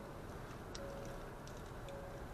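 A Kia hybrid's interior warning chime: a faint, single-pitched beep of about half a second, repeating about once a second.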